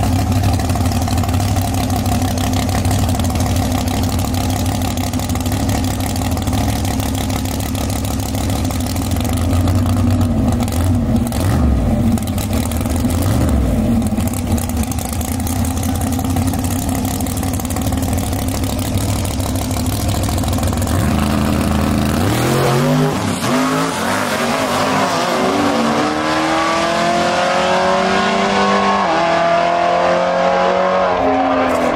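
Drag-race car V8 engine idling at the starting line, its pitch wavering now and then with small revs. About twenty-two seconds in, the car launches and the engine note climbs in repeated rising sweeps as it pulls away down the track.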